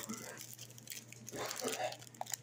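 Clear plastic bag crinkling faintly as it is pulled open by hand, with a brief murmur from a voice near the end.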